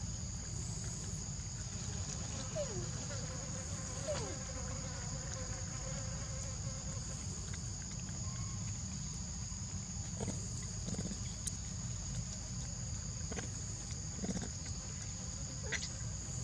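Insects droning steadily in two high, even pitches over a low steady rumble, with a few short falling squeaks now and then.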